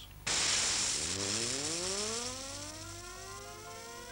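A gyroscope's rotor being spun up: a hiss starts suddenly, then a whine that rises steadily in pitch as the rotor gathers speed.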